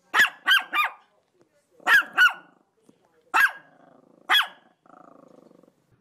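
A small dog yapping at a window: seven sharp, high-pitched barks, a quick run of three, then two, then two single barks. A faint low buzzing sound lies between the last barks.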